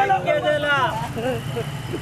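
Men's voices talking loudly in Telugu over a steady low rumble of motorcycle engines, with a faint high steady tone in the second half.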